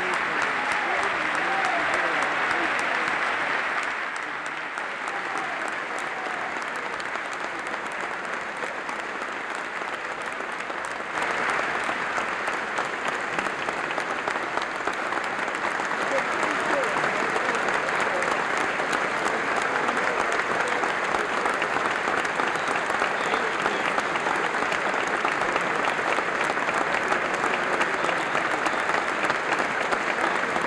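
Sustained applause from a large audience in a standing ovation, with voices and cheering mixed in. It eases off somewhat about four seconds in and swells back up around eleven seconds.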